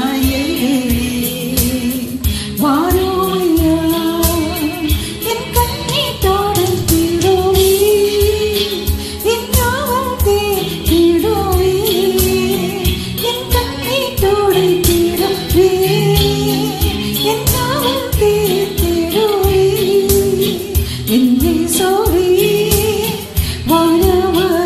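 A woman singing a Tamil Christian worship song through a microphone and PA, with a steady rhythmic beat accompanying her.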